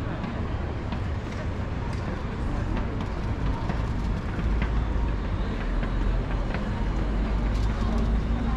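Street ambience of a busy pedestrian shopping street: passersby's voices and scattered footsteps over a steady low rumble that grows louder about halfway through.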